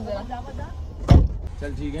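A car's rear door pulled shut from inside, closing with one solid thud about a second in, heard from inside the cabin.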